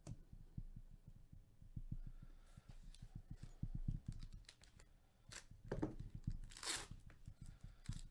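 Foil wrapper of a Panini Select football card pack being handled and torn open, crinkling, with one long loud rip about six and a half seconds in. Soft low thumps of handling run underneath.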